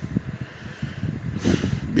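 Rough, buffeting low rumble in the background of a phone voice note, with a brief hiss about one and a half seconds in.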